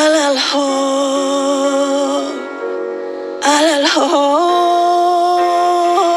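A female singer sings a slow ballad in long held notes, with quick ornamented slides between them: one near the start and another about four seconds in.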